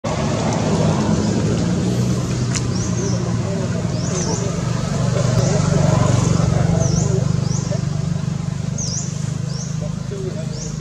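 A motor vehicle engine running steadily nearby, a loud low hum that holds throughout, with several short high chirps over it.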